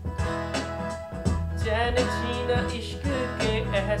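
Electronic keyboard played live with a steady backing beat, under a man singing a slow love song with held, wavering notes.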